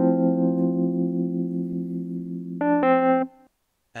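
Wurlitzer electric piano from the Lounge Lizard software instrument, played dry with no effects, sounding chords. One chord is held and slowly fades, then two short chords come near the end and cut off.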